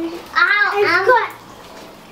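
A young child's high-pitched voice calling out once, lasting about a second, with no clear words.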